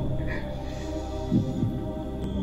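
Dark, sad background score with a steady low drone, and a heartbeat-like double thump about one and a half seconds in.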